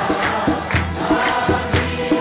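Group singing with hands clapping in time, about two claps a second, and a jingling percussion along with it.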